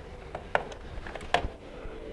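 A few light clicks and knocks, three of them sharper, from hands working the cables and hoses at a blower door fan, over a faint steady hum.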